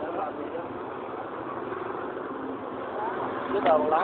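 Steady roadside traffic noise, an even hum and hiss of vehicles, with a voice speaking briefly near the end.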